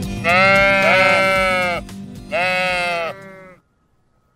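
Cartoon sheep bleating two long 'baa' calls, the first with two voices overlapping, over the last bars of a children's song backing track, which stops shortly before the end.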